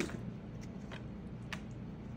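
Wooden spatula stirring a thick, creamy vegetable-and-soup mixture in a disposable aluminium foil pan: faint wet squishing with a few light clicks.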